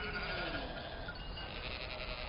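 One faint, falling bleat of sheep over a quiet outdoor background.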